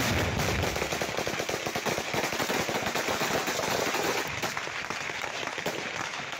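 Sustained automatic gunfire: many rapid shots from rifles overlapping with no pause, starting abruptly and keeping up throughout.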